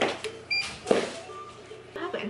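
Handheld infrared forehead thermometer giving a short, high beep about half a second in as it finishes taking a reading, followed by a sharp click.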